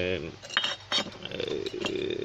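Ceramic pleco spawning caves clinking and knocking against each other and the tiled floor as they are handled and set down: a few sharp, separate clinks.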